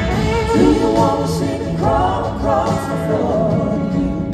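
Live rock band playing, with singing voices over the full band.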